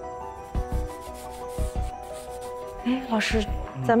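A fine brush scrubbing over the surface of an excavated ivory tusk in short repeated rubbing strokes, over soft background music with steady tones. A voice starts near the end.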